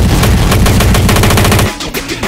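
Hardcore techno track in a rapid-fire stutter of distorted hits, fast enough to sound like machine-gun fire, with the bass cutting out sharply near the end.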